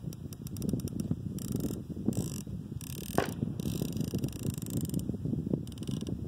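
Elevation turret of a Vortex Diamondback Tactical 6-24x50 FFP riflescope being dialled by hand, giving a quick run of audible clicks in the first second or so and again near the end. Wind noise on the microphone runs underneath.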